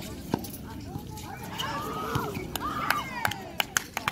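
Basketball game play: sneakers squeaking on the court surface, with a few sharp knocks near the end and players' voices.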